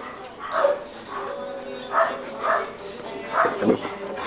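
Dogs barking during play: short single barks, about five of them spaced through the four seconds.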